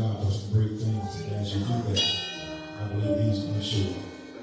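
Church music with a deep, pulsing bass and a man's voice over it through the microphone; a bright ringing hit about halfway through.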